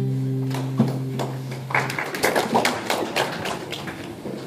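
The band's last held chord rings on and stops about two seconds in. A run of taps and knocks follows as the instruments are handled and set down.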